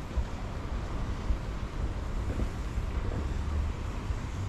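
Wind buffeting the microphone outdoors: a steady, uneven low rumble.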